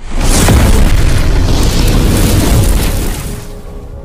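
Cinematic explosion sound effect from a logo intro: a loud boom that starts suddenly, carries on for about three seconds, then fades away.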